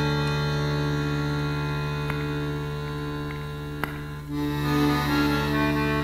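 Accordion holding a steady sustained chord, a drone with no beat, with a couple of soft clicks over it; a little past four seconds in, higher notes begin to move over the held chord.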